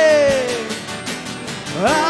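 Live worship band: singers over acoustic guitar, keyboard and drums. A sung note slides down at the start and another rises near the end.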